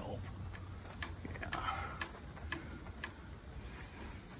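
A tall bamboo stalk being shaken by hand: a faint rustle of its leaves with light clicks, about two a second, as the stems knock together.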